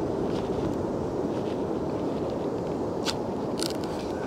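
Steady low rushing noise from the open beach, with a couple of sharp clicks about three seconds in as the hard plastic emergency beacon is handled. No beeping or alarm tone comes from the beacon.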